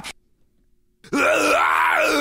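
After about a second of silence, one voice starts a long, wavering wail.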